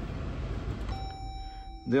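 Jeep Compass dashboard chime: a single steady electronic beep lasting about a second, starting about a second in, over a low steady cabin hum.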